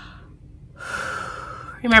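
A woman taking one deep, deliberate breath through her open mouth, an audible rush of air about a second long, before she starts speaking near the end.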